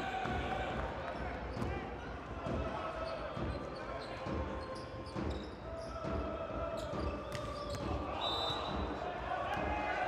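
Volleyball rally in an indoor arena: the ball struck several times with sharp smacks (serve, passes, attack), over voices and shouts echoing in the hall.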